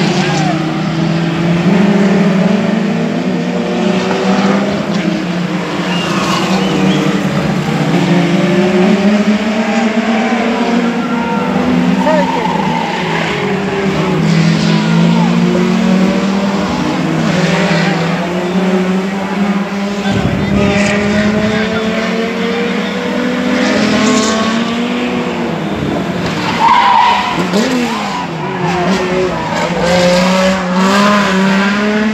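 Several Turismo Carretera Bonaerense stock cars racing through a bend, their engines rising and falling in pitch as they come off and back on the throttle, with tyres squealing at times.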